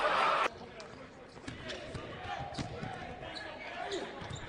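A basketball bounces a few times on a hardwood court under faint game noise. A louder stretch of game sound cuts off sharply about half a second in.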